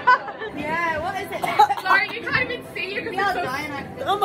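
Chatter of several people talking at once, their voices overlapping with no single clear speaker.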